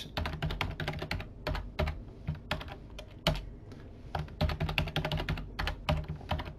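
Computer keyboard keystrokes: a password being typed in at a terminal prompt, in irregular clicks with a firmer single keystroke a little past halfway.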